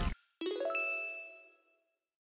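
A short bright chime sting: a few quickly struck ringing notes that fade out within about a second, just after the music before it cuts off.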